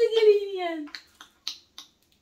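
A high voice drawn out and falling in pitch, fading out about a second in, followed by three sharp clicks about a third of a second apart.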